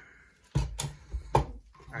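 A few short knocks and rubbing sounds as a plastic LED work light is picked up and handled on a desk.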